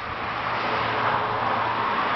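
Steady rushing noise over a low steady hum, swelling slightly in the middle, like a motor vehicle running.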